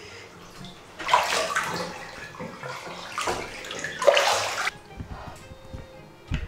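Bathwater sloshing and splashing as a person moves in and climbs out of a bathtub. It comes in two loud bursts, the first about a second in and the second from about three to four and a half seconds in.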